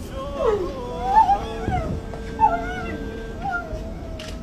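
A person crying aloud in high, wavering wails over a noisy background, with a long steady tone held through the middle.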